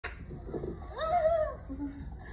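A single drawn-out voice-like call, about a second in, that rises and then falls in pitch.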